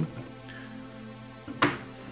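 Background music with held, steady notes. About one and a half seconds in, a single sharp click from a hand handling the folded aluminium tripod.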